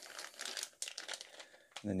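Faint crinkling of a clear plastic packaging bag, with scattered small crackles as it is handled and lifted out of a cardboard box.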